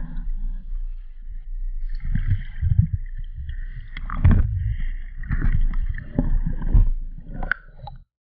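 Muffled underwater noise picked up by a diving camera in its housing as the diver swims: irregular low thumps and water rushing against the housing, loudest around the middle and again near the end, cutting off suddenly at the end.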